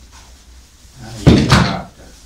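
A sudden loud knock followed by a brief scrape, about a second and a quarter in and lasting about half a second.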